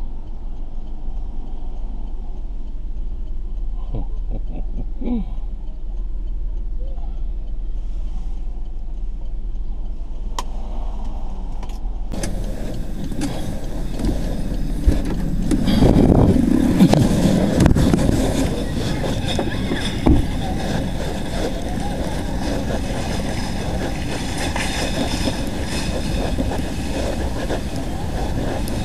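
Low steady hum of a car's interior for about twelve seconds, then a sudden change to louder street and traffic noise with rumbling and handling bumps as the recording moves along a busy city street.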